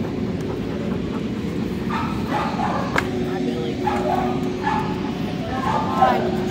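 Dogs yipping and whining in short calls, several brief ones coming in the second half.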